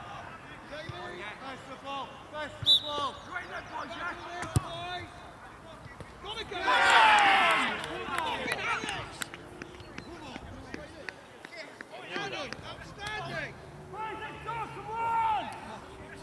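Outdoor football match: a sharp thud of a ball being kicked from a corner, a second kick about two seconds later, then a loud burst of players' shouting as the goal goes in. Scattered calls from players run on across the pitch throughout.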